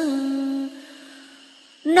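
A voice chanting Vietnamese verse holds the last note of a line steadily, then breaks off about two-thirds of a second in. A faint tone lingers with a soft hiss before the next sung phrase begins right at the end.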